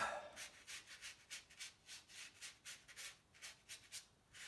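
A stiff child's paintbrush scrubbing watercolour onto dry paper in short back-and-forth strokes: a soft, scratchy rub about four times a second.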